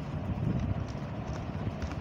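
Computer keyboard keys tapped a few times, light clicks over a low background rumble.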